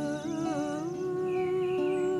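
A woman humming a wordless melody over an acoustic guitar; her voice wavers through a short phrase, then holds one long note from about a second in.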